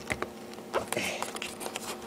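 Fingers gripping and twisting a tight plastic twist-lock bulb socket in a Chevrolet Impala headlight assembly: scattered small clicks and scrapes of plastic on plastic as it resists turning. A faint steady hum runs underneath.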